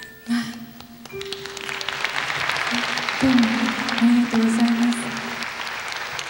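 Audience applauding, starting about a second in, while the band keeps playing quiet held notes with a low line underneath.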